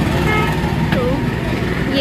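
Steady low rumble of road traffic, with indistinct voices of people talking in the background.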